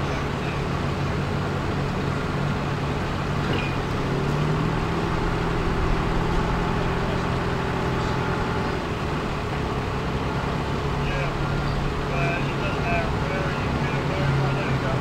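Mobile crane's diesel engine running steadily, its pitch rising a few seconds in, easing back about midway and rising again near the end as the crane moves its suspended load.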